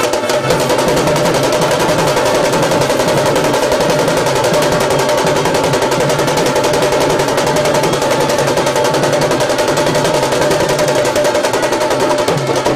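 Street drum band playing fast, dense drumming on snare and bass drums, with a steady held melody line over the beat.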